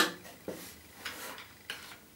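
A thin dowel being pushed into the drilled knuckles of a handmade wooden box hinge: a sharp click at the start, then a few lighter knocks and scrapes of the rod against the wood.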